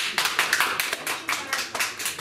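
A small audience applauding, many hand claps close together.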